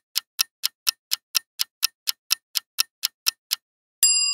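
Clock-style ticking sound effect counting down the answer time in a quiz, about four even ticks a second, stopping shortly before the end.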